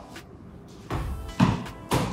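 A football flicked up off a tiled floor by a foot digging under it, giving a few sharp thumps about a second apart, the loudest near the middle, as it is kicked, knocked and caught in the hands. Soft background music plays underneath.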